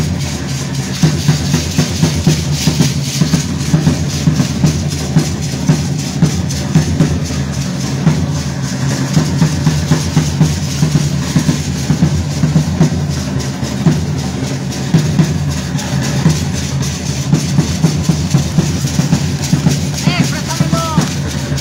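Bass drums and snare drums playing a steady, driving beat for a traditional Mexican danza troupe.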